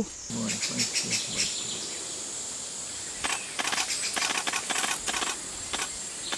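Forest ambience: a steady high-pitched insect drone, and from about three seconds in a run of short crackling rustles and clicks.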